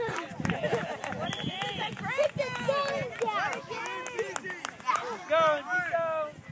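Several high-pitched voices shouting and calling over one another across a youth soccer field, with a brief steady high whistle about a second in.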